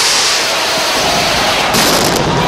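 Signal rocket fired for the release of the bulls from the corral at the start of a San Fermín bull run: a sudden blast that carries on as a loud, rushing hiss, with a sharper burst near the end.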